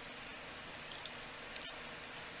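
Hands handling and stacking cut sheets of soft polymer clay on paper: a few faint soft contacts, the clearest about three-quarters of the way through, over a steady background hiss.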